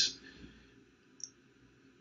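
A man's voice trails off at the start, followed by a quiet stretch broken by a single short, faint click a little after the middle.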